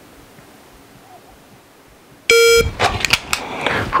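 The MantisX shot-timer app gives a single short start beep about two seconds in, after a wait with only room tone. A quick run of clicks and rustles follows as the pistol is drawn from the holster and dry-fired at the target.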